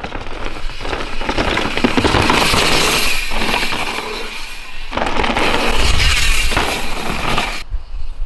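Mountain bike tyres rolling and crunching over a dirt trail as the rider passes close by, twice, each pass swelling up and fading over about two seconds; it cuts off suddenly near the end.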